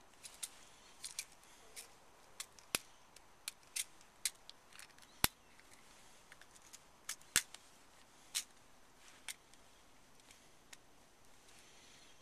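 Faint, irregular small metal clicks and taps from a black powder revolver being handled while percussion caps are pressed onto its cylinder nipples. Three sharper clicks stand out, at about three, five and seven seconds in.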